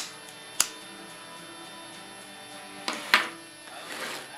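A cigarette lighter being clicked while a cigarette is lit: a sharp click at the start and another just after half a second, then a louder click with a short hiss about three seconds in, over a steady faint hum.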